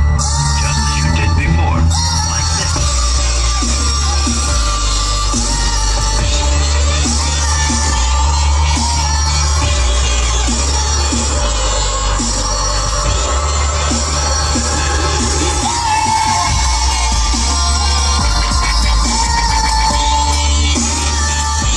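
Loud electronic-style music played through a car stereo with a Bazooka 6.5-inch subwoofer, heard inside the cabin. The deep bass comes and goes in long stretches under the rest of the track.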